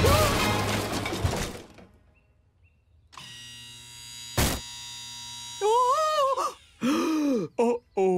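Cartoon soundtrack: busy music with action sound fades out, and after a short quiet a held music chord begins. Partway through the chord a single sharp thud is heard, followed by a character's wordless worried vocal sounds.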